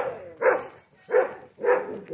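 A dog barking repeatedly, a run of short barks about one every half second.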